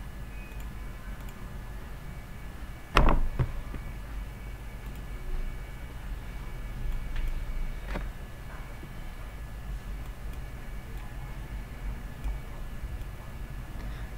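Steady low background hum and hiss with one sharp knock about three seconds in and a couple of fainter clicks later.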